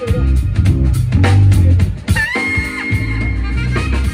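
Live band music from keyboards and a drum kit over a heavy bass line. About two seconds in, a lead note scoops up and is held for about a second.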